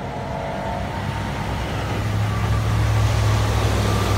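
Kansas City Southern diesel locomotive, working as a distributed-power unit mid-train, running past with a low steady drone that grows louder from about halfway through.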